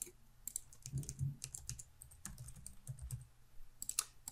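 Faint, irregular clicking of a computer mouse and keyboard as the software is operated, with a few soft low knocks among the clicks.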